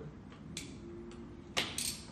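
Faint clicks from a toy balloon-pop game's pump mechanism being worked under the balloon, with no pop. A louder, short burst of noise comes near the end.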